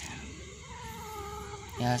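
A cat gives one drawn-out call, a little over a second long, that rises slightly and falls again.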